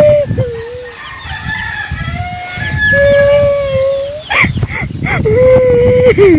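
A boy crying and wailing in long, drawn-out, rising-and-falling cries, interrupted by sobs. The longest wail comes in the middle and another near the end.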